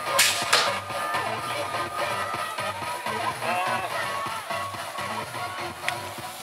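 Music plays throughout. In the first second a BMX start gate drops with two sharp bangs, alongside a held electronic beep.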